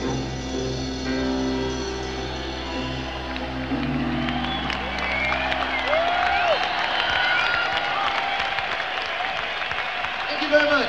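A live rock band's held final chord dies away about halfway through, and the concert crowd cheers and applauds.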